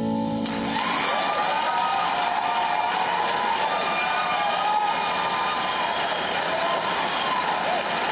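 An acoustic guitar's last chord stops about half a second in, then a live audience applauds and cheers, with whoops, steadily to the end.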